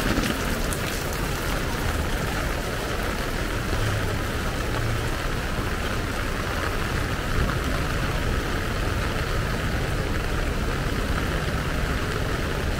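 Steady rain falling on a wet street, an even continuous hiss of rain with no breaks.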